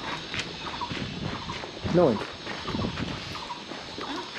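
A brief exchange of speech over low outdoor background noise, with a man's short answer, "No," about two seconds in.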